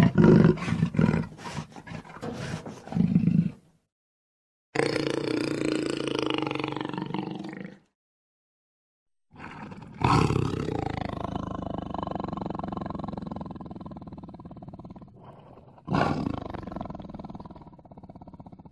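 Jaguar growling in separate calls. First comes a quick run of short grunts, then after a pause a growl of about three seconds. After another pause there is a long growl that fades away over about six seconds, and near the end a fresh growl starts loud and trails off.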